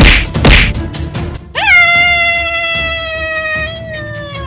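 Two short sharp hits in the opening half second, then about one and a half seconds in a long, high-pitched cry that starts abruptly and slowly sinks in pitch, held to the end, with background music underneath.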